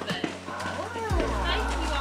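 Voices of people talking at a doorway over music, with a few deep thuds and a steady low hum that comes in about a second in.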